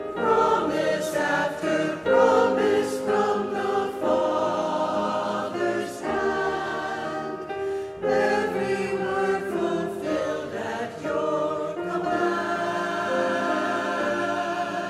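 Chancel choir of men's and women's voices singing an anthem together, phrase by phrase, with brief breaks between phrases about two, six and eight seconds in.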